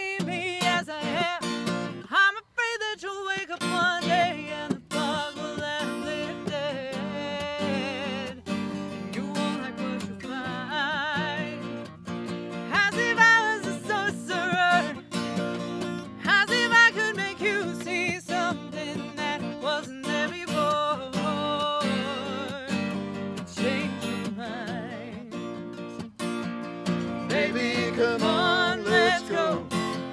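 Steel-string acoustic guitar strumming a country song, with singing over it.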